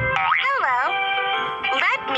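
Children's educational video soundtrack: background music with cartoon swooping sound effects and a voice over it.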